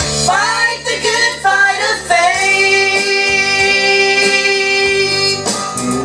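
A woman singing a gospel song into a microphone over guitar accompaniment. The music bends through a short phrase, then holds one long note from about two seconds in until near the end.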